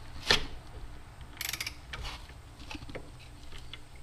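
Ratcheting torque wrench tightening the bolts of a cam gear on a VW Type 1 camshaft. There is a sharp metallic click about a third of a second in, a quick run of ratchet clicks around a second and a half in, and a few lighter ticks after.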